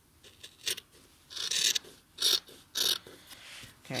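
Cloth being handled and rubbed, as denim jeans are smoothed and set on folded cotton fabric: four or five short swishes with quiet gaps between them.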